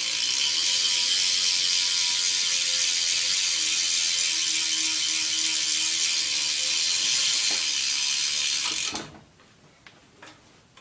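BMX rear hub (Cinema) freewheel ratchet buzzing steadily as the rear wheel is spun by hand, the pawls clicking too fast to count. It cuts off suddenly about nine seconds in as the wheel is stopped.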